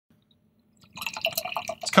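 Beer poured from an aluminium can into a stemmed tulip glass, the liquid gurgling and splashing into the glass from about a second in.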